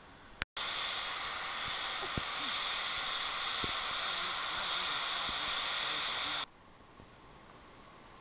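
Steam locomotives venting steam: a loud, steady hiss that starts just after half a second in and cuts off suddenly about six and a half seconds in.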